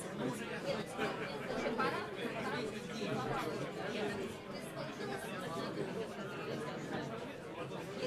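Indistinct chatter of many people talking at once, a steady babble of conversation with no single voice standing out.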